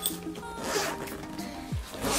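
The zipper of a carry-on duffle bag being pulled open in short runs, about halfway through and again at the end, over background music with a steady beat.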